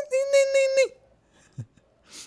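A man's voice holding one high note for just under a second, its pitch dipping as it ends.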